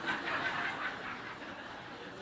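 Faint chuckling from an audience.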